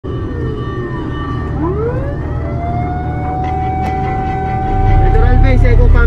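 Fire truck siren wailing: the tone falls at first, then winds up again about a second and a half in and holds a steady wail for a few seconds, over engine and road rumble. Near the end the rumble gets louder and voices come in.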